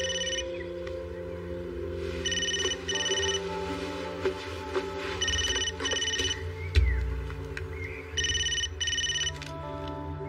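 A phone ringing in a double-ring pattern, a pair of short high rings about every three seconds, over background music.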